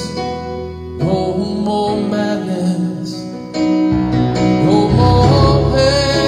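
A man singing a worship song with instrumental accompaniment, as part of a medley of worship songs.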